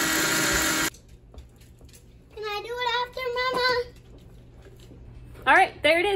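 Hamilton Beach personal bullet-style blender grinding dried mushrooms into powder. Its motor runs loudly, then cuts off suddenly about a second in.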